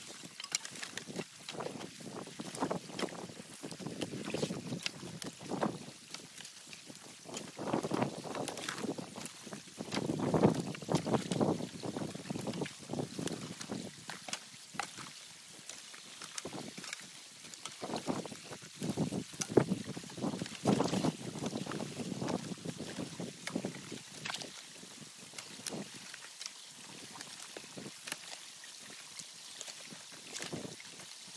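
Sticks and branches being pulled out of a beaver dam by hand while standing in the stream: irregular crackling and snapping of wood with splashing and sloshing water, and water trickling through the dam. Wind buffets the microphone at times.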